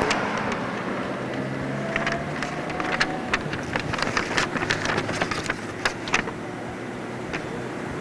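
Street traffic with a car engine running, a steady hum under scattered sharp clicks and ticks.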